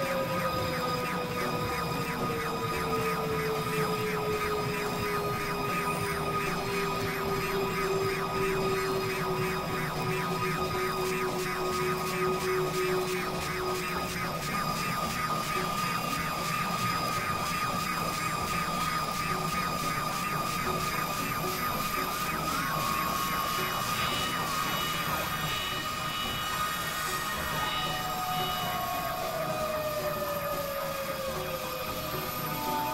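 Dense experimental electronic drone collage of several overlaid tracks. Steady high tones sit under a fast, regular pulsing, while a lower tone glides slowly downward over the first half and another falling glide comes in near the end.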